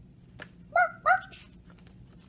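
A person imitating a dog, barking twice in quick succession about a second in: the "Bark! Bark!" of a picture book read aloud.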